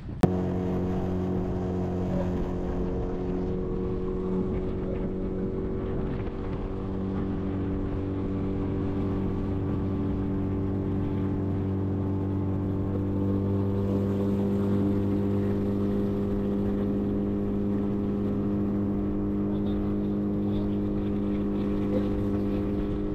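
Small outboard motor on a 14-foot skiff running at a steady cruising speed, a continuous engine hum whose pitch shifts slightly a few times as the boat motors across the water.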